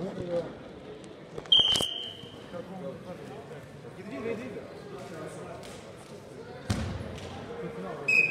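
Wrestlers' bodies thudding onto a sambo mat: a sharp thump about one and a half seconds in, followed at once by a short, loud high-pitched tone, and a second thump near the end. Faint voices carry through a large hall.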